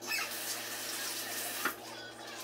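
French toast sizzling in a buttered frying pan: a dense, even hiss that starts suddenly and dies down about a second and a half in, ending with a short click.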